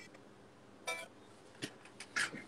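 Quiet room tone with two brief, faint clicks, one about a second in and another shortly after.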